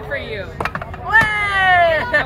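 Two sharp knocks, the second followed at once by one long, loud shout from a person's voice that falls steadily in pitch.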